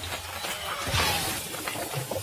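Film sound effects of a fiery blast: shattering, clattering debris and crackling sparks, a dense rush of noise scattered with many sharp clicks.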